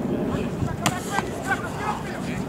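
Outdoor background noise with scattered voices, and a sharp knock a little under a second in.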